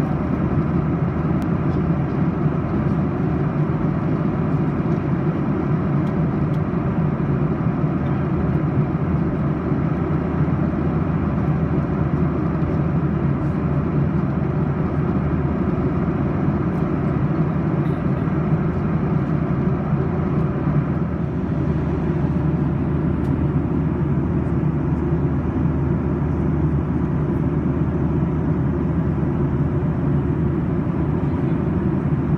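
Steady cabin noise of a Boeing 737-800 in flight, heard from a window seat beside its CFM56-7B engine: a constant low rumble of engine and airflow.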